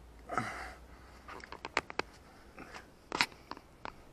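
Scuffs, scrapes and sharp clicks of a person clambering and feeling around in a small sandstone cave, with a short rustle near the start and two clusters of knocks later on.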